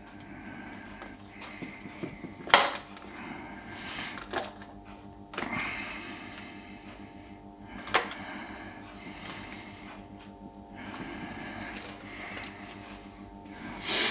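Hands scattering yellow bell pepper pieces onto salad greens in a steel baking tray: soft rustling in short spells, with two sharp clicks, one about two and a half seconds in and one about eight seconds in. A steady low hum runs underneath.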